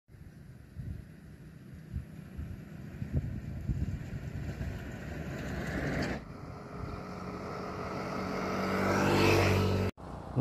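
A motor vehicle's engine growing steadily louder through the second half, loudest just before the end, after a few seconds of irregular low rumbling and knocks.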